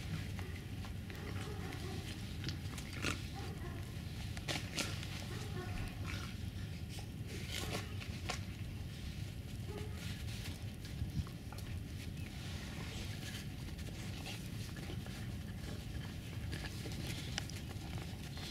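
Tibetan mastiff puppies playing together over a log in snow: animal vocal noises mixed with scattered short crunches and knocks of paws and teeth on snow and wood, over a steady low rumble.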